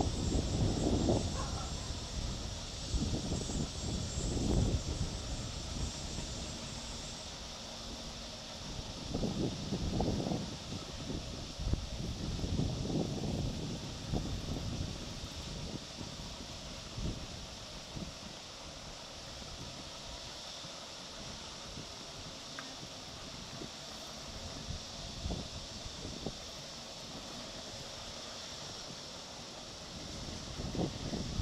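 Wind gusting across the microphone in irregular low rumbles, heavier in the first half and easing later, over a steady high-pitched hiss of outdoor ambience.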